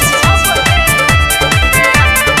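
Instrumental break of a Bhojpuri dance song with no vocals: an electronic beat of deep bass hits that each fall in pitch, repeating evenly, under held synth tones.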